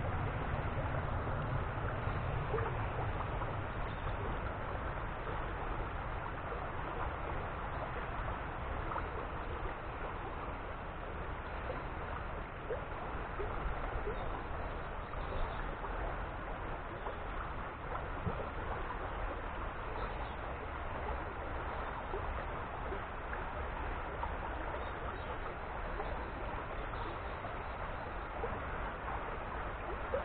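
A small river running, a steady rushing hiss of water over a shallow riffle, with a low rumble in the first few seconds.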